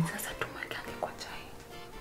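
A woman speaking quietly over soft background music.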